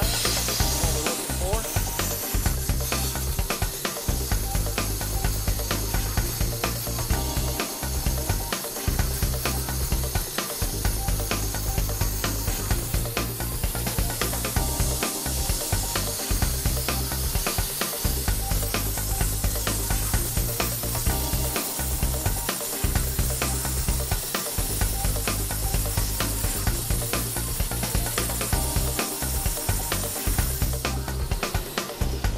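Steady high hiss of an abrasive waterjet cutting granite, heard under background music with a pulsing bass line.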